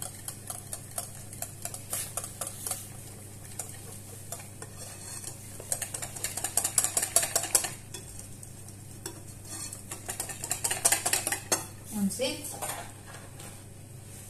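Metal balloon whisk beating and scraping around a glass bowl, working flour and cocoa into a génoise batter. It makes rapid clicking strokes, lighter at first and busiest in two spells, one past the middle and one near the end.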